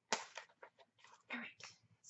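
A cardboard subscription box being opened by hand: a sharp snap just as it starts, then scattered crackles and rustling of the lid and packing.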